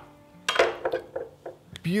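Knife and meat knocking and clinking a handful of times on a wooden cutting board while slicing smoked beef ribs.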